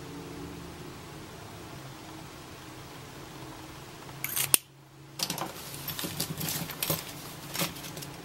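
Faint steady room hum, then about four seconds in a couple of sharp clicks, a sudden brief gap, and a run of small plastic clicks and rustles from pens being handled.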